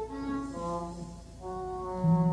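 Twelve-tone chamber music for a sextet of flute, English horn, horn, cello and percussion: a quiet passage of three long held notes in turn, each at a new pitch.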